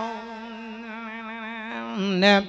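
A monk's voice holding one long, steady hummed note through a microphone and PA, part of an Isan lae sermon sung in melodic style.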